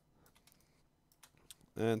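A series of light, quick computer mouse clicks, irregularly spaced, with a man's voice starting to speak right at the end.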